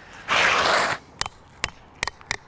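Asphalt roof shingles scraped by a hand sliding across them, a loud rasp of under a second, followed by two sharp clicks.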